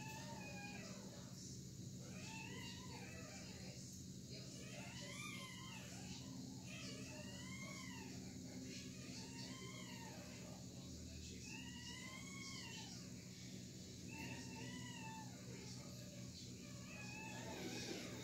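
A cat meowing faintly and repeatedly, about a dozen short calls that rise and fall in pitch, one every second or two, over a steady low hum.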